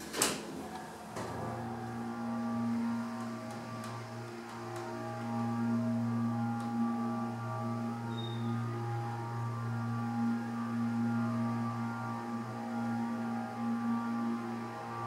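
A hydraulic elevator's door shutting with a sharp knock, then, about a second in, the car starting upward with a steady hum from the hydraulic pump motor that holds through the ride.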